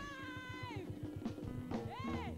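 A woman's drawn-out shout into a stage microphone, sliding down in pitch and fading out within the first second, as a band strikes up under it with a fast, even low beat and sustained low notes. A second short shout rises and falls near the end.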